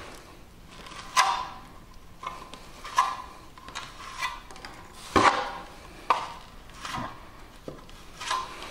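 Steel plastering trowel pressing and scraping bonding-coat plaster into a wall chase: several short scrapes and slaps of steel on wet plaster, a second or two apart.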